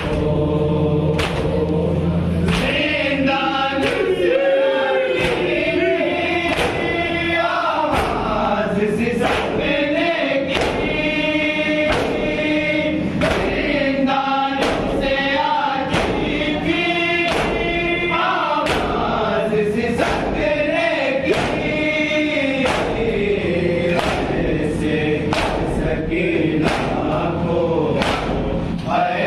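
Men's voices chanting a noha lament together, led by a reciter, with hands striking chests in unison about once a second as rhythmic matam.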